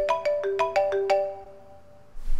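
Smartphone ringtone for an incoming call: a quick melody of clear, bell-like mallet notes that stops about a second and a half in.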